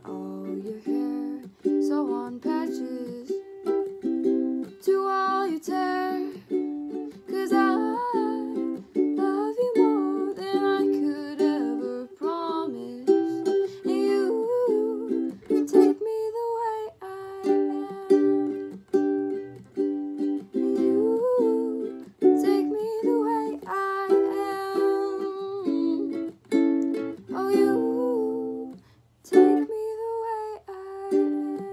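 Ukulele strummed in a steady rhythm while a girl sings along. The strumming and singing break off briefly near the end.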